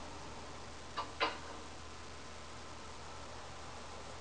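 Steady low hiss of a quiet room on a webcam microphone, with two quick small clicks close together about a second in.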